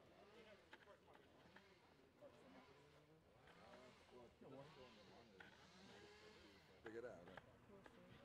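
Faint, indistinct chatter of people talking, with a few light clicks.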